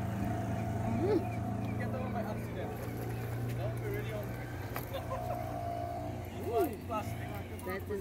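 An engine running steadily at low pitch, fading after about six seconds, with short voice-like calls over it about a second in and again near the end.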